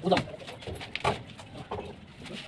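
Wooden shuttering plank knocking and scraping against the concrete slab edge as it is pried loose with a bar and lifted, in a string of short irregular knocks, with a person's voice.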